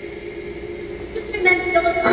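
SCD-1 ghost box software sounding through the Portal echo box: a steady low drone under a thin high whine, then about a second and a half in, a louder run of choppy, garbled voice-like snippets.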